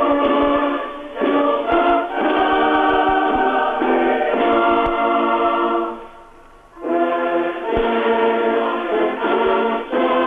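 A choir singing slow, held chords, the recording sounding thin, with no deep bass or high treble. The singing breaks off briefly about six seconds in, then resumes.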